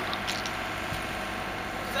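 Railway carriage rolling slowly along the track, a steady low rumble with an engine running.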